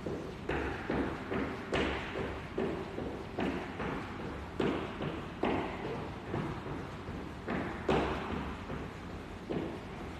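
Jump rope in use on a hard floor: a steady run of landing thuds and rope slaps, about two to three a second.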